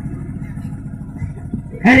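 A low, steady rumbling noise with no clear source, then a voice shouting "arey" near the end.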